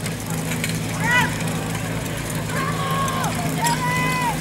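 Portable fire pump engine running at a steady pitch while the hoses are charged, with voices shouting long calls over it several times.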